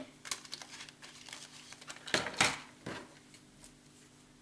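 Buttons being put back into their container: small scattered clicks and rustling, with a louder rustle about two seconds in and another shortly after.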